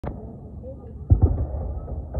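Aerial fireworks going off: two deep booms in quick succession about a second in, with a low rumble rolling on briefly after.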